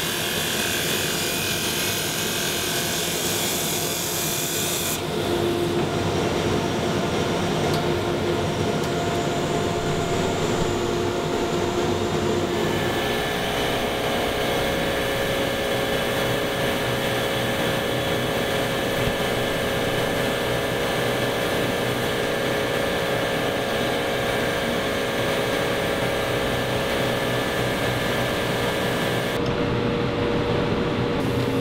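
Wood lathe running while a hand-held turning tool cuts a spinning wooden chair part, a steady machine hum mixed with the rough scraping of the cut. The sound changes character twice, about five seconds in and again about twelve seconds in.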